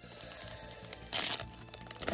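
Foil booster-pack wrapper being torn open, a short crinkly rip about a second in, over faint background music.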